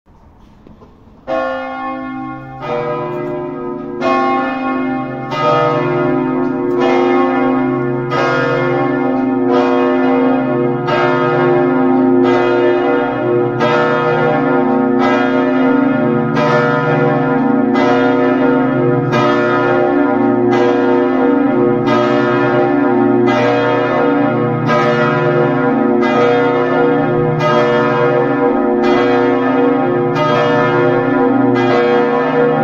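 A three-bell church concert in B2 being rung by swinging, with the clappers striking in the falling-clapper (battaglio cadente) style. Strokes start about a second in and fill out over the first few seconds into a steady sequence of strikes, about one every second and a half, over a continuous low ringing hum.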